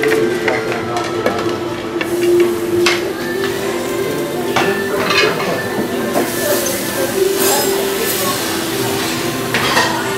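Clinking and clatter of dishes and metal utensils at a busy buffet counter, with scattered sharp clicks over a steady background hum.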